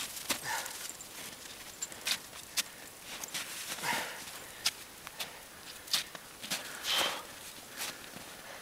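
Boots kicking steps into firm snow and a Sidestix forearm crutch tip planting beside them on a steep climb: irregular crunches and sharp clicks, about one to two a second.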